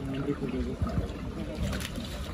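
People talking, then water splashing and churning from about a second and a half in as a man ducks fully under in a shallow plunge pool of ice-cold water.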